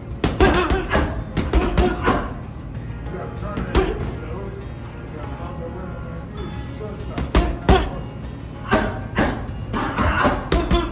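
Boxing gloves striking a heavy punching bag in quick flurries of thuds: a run of hits in the first two seconds, a single blow near four seconds, a pair around seven and a half seconds and another flurry near nine seconds. Music with singing plays underneath.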